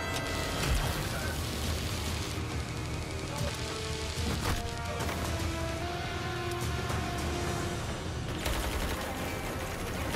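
Action-scene soundtrack: a dramatic music score over a dense mix of fight sound effects with repeated sharp bangs.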